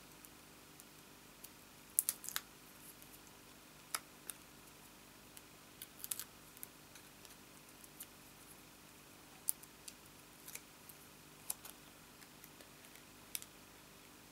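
Faint, scattered clicks and brief crackles of thin card and paper pieces being handled and pressed down by fingers, a few louder ticks now and then.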